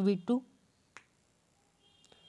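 A single short, sharp click about a second in, after a man's voice finishes a word.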